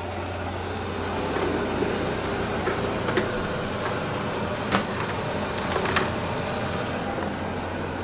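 Shark robot vacuum running: a steady motor hum with a few light clicks.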